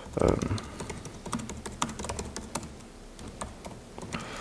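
Typing on a computer keyboard: a run of light key clicks at irregular spacing as a short line of text is typed.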